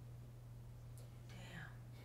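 Near silence: quiet room tone with a steady low hum, a faint click about halfway through and a brief soft breathy sound just after it.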